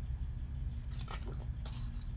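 Steady low background rumble with a few faint, soft rustles of a picture book's paper pages being turned.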